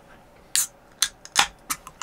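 Aluminium beer can being cracked open by its pull tab: several short, sharp clicks, the loudest about one and a half seconds in.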